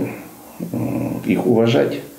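Only speech: a man talking in a small room, with a short pause near the start.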